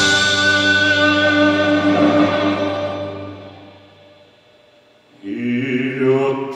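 Live instrumental accompaniment: a chord struck at the start rings on and fades away over about four seconds to near quiet, then the band comes back in with a new chord about five seconds in.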